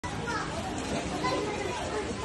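Background chatter of several voices, some of them children's, with no clear words.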